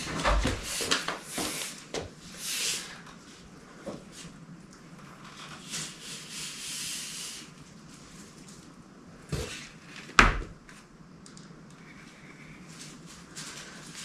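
Handling noise from a long plastic car side skirt in protective plastic film being turned over: rustling and rubbing, with a knock about nine seconds in and a sharper, louder knock a moment later.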